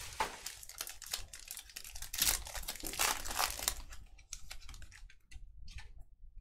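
Plastic trading-card packaging crinkling and tearing as it is handled and opened: a dense run of crackles through the first four seconds, thinning to scattered light clicks.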